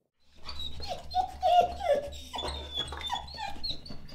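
A dog whining and whimpering: a string of short, falling whines over a low steady hum.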